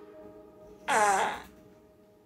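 A man's short groan, about a second in, sliding down in pitch and lasting about half a second, over a faint steady tone.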